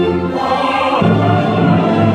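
Mixed choir and orchestra performing a solemn mass setting. About half a second in, sustained held chords give way to the full ensemble singing and playing.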